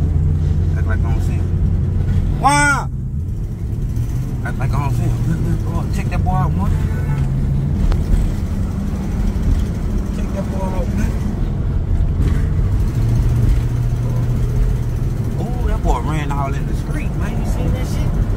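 Car engine and road noise heard inside the cabin while driving, a steady low hum. About two and a half seconds in there is a brief, loud, high-pitched shout, and a few faint voices come and go.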